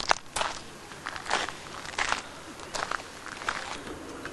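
Irregular footsteps, about one to two steps a second, each a short crunchy stroke.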